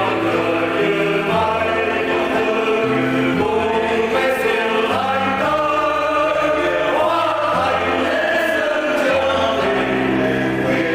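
A choir singing a slow Vietnamese Catholic offertory hymn with instrumental accompaniment, the voices moving over held low bass notes that change about once a second.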